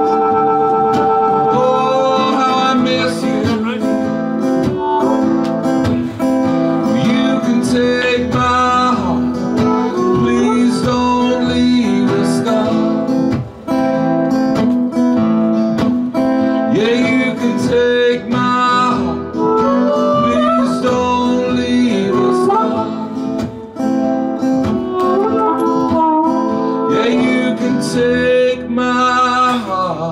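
Harmonica solo over a strummed acoustic guitar, an instrumental break in a slow country-folk song. The harmonica holds long notes at first, then plays bending, sliding phrases.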